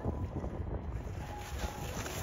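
Wind buffeting the microphone with a gusty low rumble. Toward the end comes a rising hiss of skis carving across firm, lumpy snow as the skier nears.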